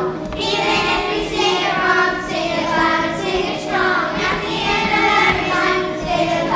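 A group of young children singing together in unison over musical accompaniment.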